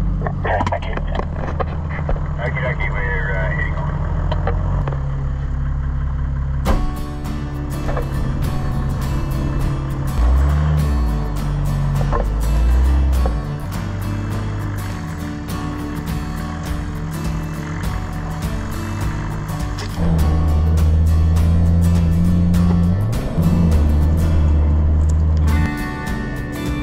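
Low steady rumble inside a four-wheel drive's cabin on a dirt track, with a short laugh, then from about seven seconds in, background music with a quick beat.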